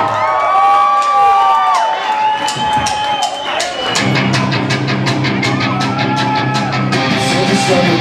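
A live rock band opening a song at loud PA volume: long, bending electric guitar tones ring for the first few seconds, then about four seconds in the bass and band come in under a fast, steady rhythm. Singing starts at the very end.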